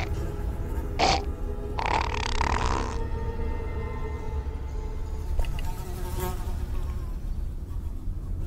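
Horror sound design: a low, steady ambient drone, with two short raspy bursts about one and two seconds in. The bursts are the hiss of a zombie lifting its head, its mouth open.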